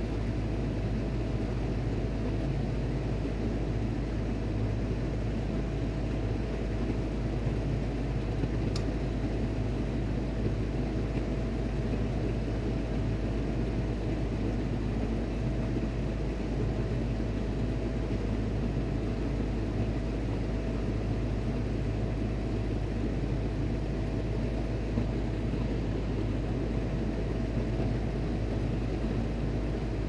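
Steady machinery drone aboard a ship: a deep, even rumble with a faint steady hum above it, unchanging throughout. A single faint click comes about nine seconds in.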